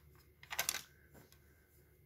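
A quick cluster of light plastic clicks, then one fainter tick: a cassette case being handled and set down.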